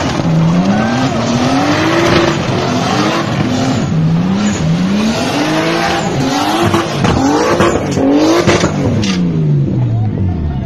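A car's engine revving hard during a burnout, its pitch climbing and dropping again and again over the squeal of spinning tyres. Near the end the revs fall away.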